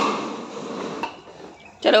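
Plastic wheels of a child's ride-on swing car rolling and rattling over a stone-tiled floor, fading and cut off about a second in.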